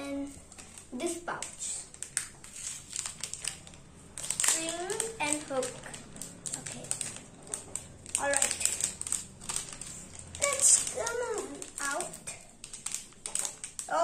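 Small plastic parts pouches crinkling and clicking as they are handled and torn open, with short bursts of a child's voice every few seconds.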